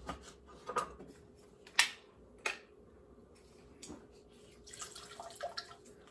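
A few sharp clicks and knocks of bar tools being handled, then near the end a hand-held citrus press squeezing a lemon half, with small clicks and fresh lemon juice dripping into a mixing glass.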